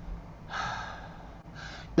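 A woman breathing audibly between sentences: a longer breath about half a second in, then a short breath just before she speaks again.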